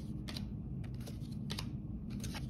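A stack of football trading cards being flipped through by hand, cards slid from the front of the stack to the back. The card edges give a few light, irregular clicks.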